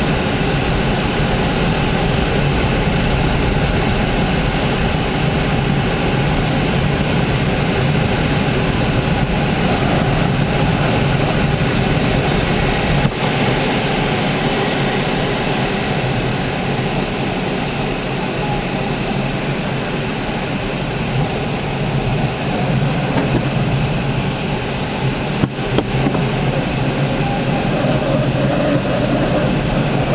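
Steady rush of air over the canopy inside an ASH 25 sailplane's cockpit in flight at about 130 km/h, with no engine running. Two brief knocks, one about midway through and one later.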